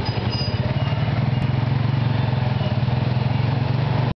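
Several motorcycle mototaxis, three-wheeled motorcycle tuk-tuks, running their small motorcycle engines at low speed close by, with a steady, rapidly pulsing engine hum.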